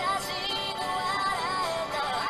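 Background music carried by a synthesized singing voice, its melody gliding up and down.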